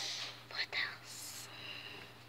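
A girl whispering softly: a few short, breathy syllables.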